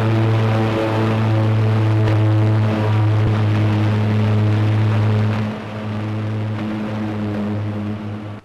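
High-voltage electric power arc buzzing with a loud, steady mains hum and a crackle over it, easing slightly a little past halfway.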